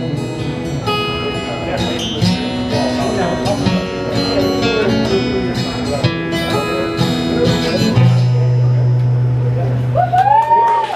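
Acoustic guitar picking and strumming through the closing bars of a song, then holding a final low chord that rings out from about eight seconds in.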